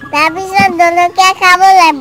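A small child singing in a high voice, with drawn-out held notes.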